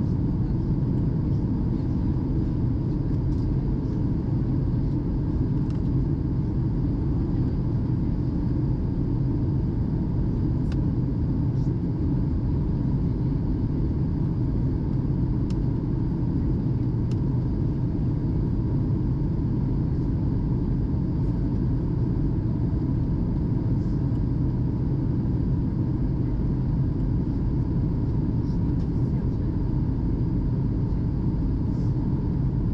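Steady cabin noise of a Boeing 737-800 airliner in flight, heard from a window seat: a constant deep rumble of the CFM56 engines and rushing air, with a faint steady hum over it.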